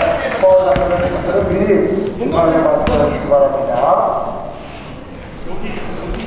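Men's voices talking and calling out on a basketball court, with a couple of sharp knocks, about one and three seconds in.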